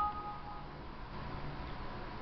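Faint steady hiss in a pause of the recording, with a two-note steady tone dying away in the first half second.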